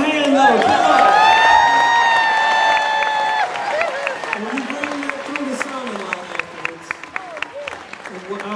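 A high voice holds one long note for about three seconds. Scattered clapping from the concert audience follows, thinning out, with a few low voices over it.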